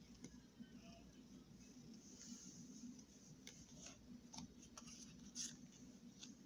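Near silence with a few faint taps and soft slides of Pokémon trading cards being laid out and shifted by hand on a playmat.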